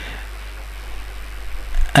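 A steady low hum with a faint hiss over it.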